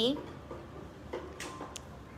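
A few light clicks and knocks, spaced out over a second or so, as a portable sanitizing fogger machine is handled.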